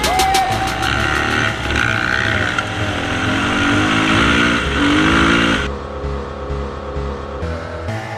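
Dirt bike engine running under throttle on a gravel track, mixed with background music. A little over halfway through, the riding noise cuts off abruptly and the quieter music carries on.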